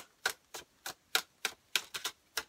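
A tarot deck being hand-shuffled: cards snapping against each other in a steady run of sharp clicks, about three a second.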